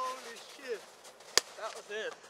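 Young men's voices with short bursts of laughter, broken by one sharp crack a little over a second in.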